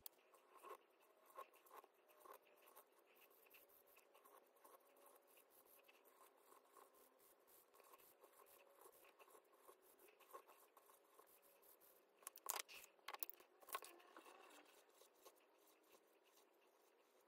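Faint scratching and squeaking of a Sharpie marker colouring in small circles on a paper tracker, with a few louder clicks and paper rustles about three-quarters of the way through.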